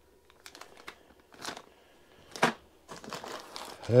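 Clear plastic kit parts bags crinkling in the hands in short, scattered rustles, the loudest about two and a half seconds in.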